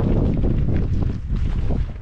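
Wind buffeting the microphone, a loud, uneven low rumble.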